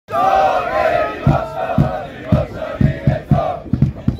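A group of men chanting and shouting together as a football team's championship celebration, over a beat of low thumps about twice a second.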